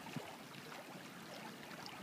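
A small stream running steadily, a faint even rush of flowing water.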